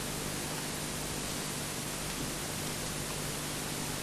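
Steady hiss of recording noise with a faint low hum underneath, no other sound.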